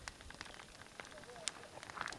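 Faint crackling from campfire coals, with scattered small sharp pops, as a green, wet stick is held in the flame to cook the water out of it.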